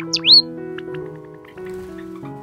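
Java sparrow chirping: a short falling chirp, then one loud, sharp rising chirp right at the start, followed by a couple of faint chirps, over background music.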